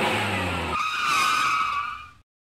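A vehicle sound effect: an engine runs, then about three-quarters of a second in it gives way to a wavering, high-pitched tyre squeal that fades out at the end.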